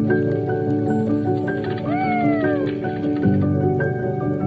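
Soft instrumental music with sustained, gently shifting notes. About two seconds in comes a single short animal cry, like a cat's meow, that rises briefly and then slides down in pitch.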